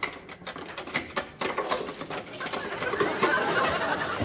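Rapid, irregular clicking and clattering, like a small mechanism or objects being worked by hand, growing denser and louder toward the end.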